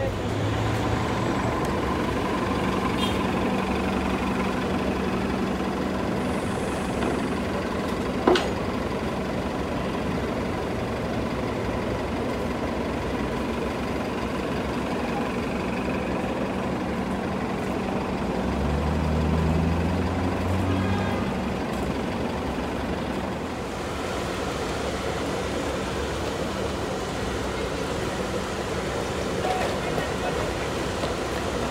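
New Flyer C40LF CNG city bus engine running, with street traffic around it: a steady hum, one sharp click about eight seconds in, and an engine note rising in pitch around nineteen to twenty seconds.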